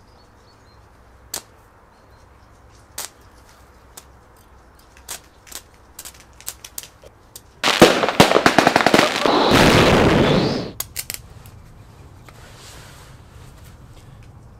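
Electric arc from a thin steel wire shorted across 24 volts from two 12-volt car batteries in series, struck against a steel strip: a few light clicks as the wire taps the strip, then about halfway through a loud run of crackling as the arc burns for about three seconds, melting the wire and tacking it to the strip.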